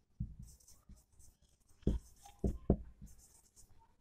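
Marker pen writing on a whiteboard: short, intermittent strokes of the tip on the board, with a few louder strokes and a brief squeak about two to three seconds in.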